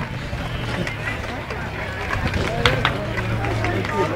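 Outdoor street crowd: indistinct chatter of people nearby, with a low steady hum that returns about halfway through and a couple of sharp clicks.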